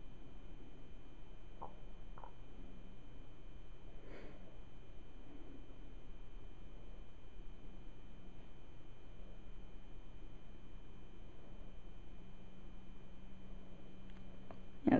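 Quiet room tone: a steady low hum with faint high steady tones, and a few faint, short sounds in the first few seconds.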